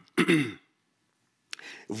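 A man clears his throat once, briefly, near the start. After a short pause there is a mouth click and a breath in, just before he speaks again.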